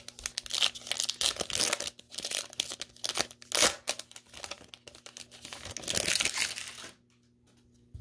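Foil wrapper of a Panini Chronicles basketball card pack crinkling and tearing as it is ripped open by hand and the cards are pulled out. The rustling stops about a second before the end.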